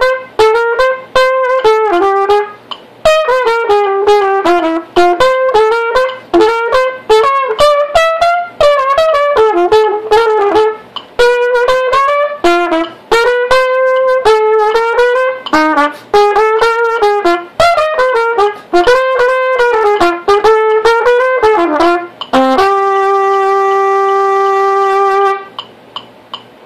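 Trumpet sight-reading a medium-swing jazz etude to a metronome set at 160, playing short tongued phrases of swung notes with brief breaths between them. It ends on one long held note about three seconds before the end.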